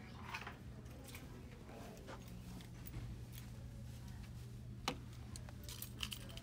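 Quiet indoor room tone: a steady low hum with scattered soft clicks and one sharper click about five seconds in.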